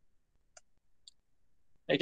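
Two faint clicks about half a second apart in near silence, of the kind made while advancing a presentation slide; speech starts near the end.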